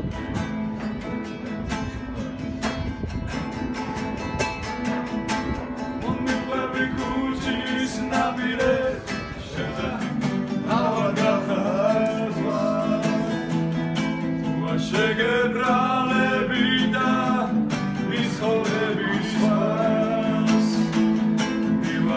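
Nylon-string classical guitar strummed steadily in chords. A man's singing voice joins about seven seconds in.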